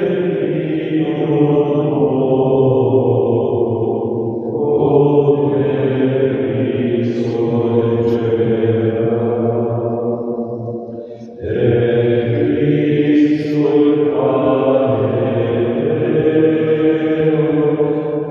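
A slow devotional song, sung in long held notes over a sustained accompaniment. The sound dips briefly about eleven seconds in, then the singing resumes.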